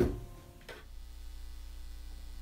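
A sharp click as a held electronic keyboard chord cuts off, its tail fading within about half a second, followed by a steady low mains hum.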